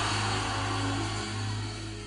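Steady low drone from the hall's sound system under a faint wash of crowd noise, slowly fading.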